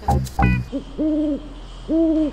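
Low owl-like hoots, each held on one steady pitch: a short hoot, then a longer one, and a third beginning right at the end, after a few light clicks.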